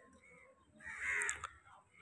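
A single crow caw about a second in, lasting about half a second.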